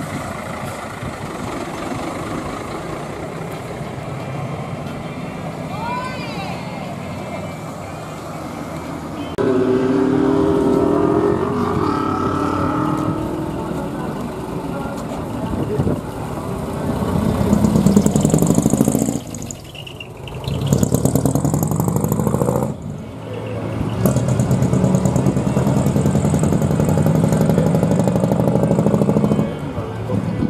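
Diesel engines of decorated Japanese trucks (dekotora) fitted with manifold-split (mani-wari) exhausts, several trucks in turn pulling away and driving off, loudest about two thirds of the way through and near the end. People's voices can be heard under them.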